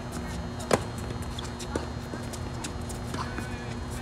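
Tennis ball struck with a racket on a topspin forehand: one sharp pop about three-quarters of a second in. Fainter knocks follow from the ball bouncing and the opponent's return at the far end of the court, and another hard racket hit comes right at the end.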